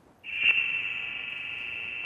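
A high-pitched ringing tone that comes in sharply about a quarter to half a second in and then holds steady: a sustained sound effect added in editing.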